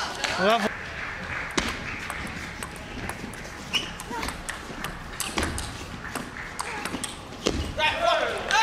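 Table tennis ball clicking off rackets and the table in a doubles rally: a run of sharp, irregular clicks in a large hall. A short shout rises over it about half a second in.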